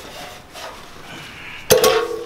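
A stock exhaust muffler being worked off under a car, metal scraping and rubbing as it comes loose. About a second and a half in, a sudden much louder metallic noise cuts in.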